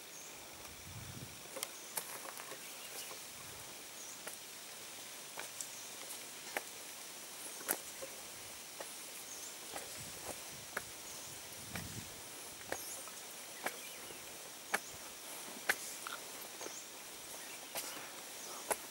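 Footsteps climbing stone steps: sharp, irregular taps and scuffs roughly once a second, over a faint steady outdoor hiss of insects.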